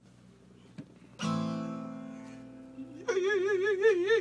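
Steel-string cutaway acoustic guitar: one strummed chord about a second in, left to ring and die away. About three seconds in, a voice comes in over it with a wordless held note that wavers up and down.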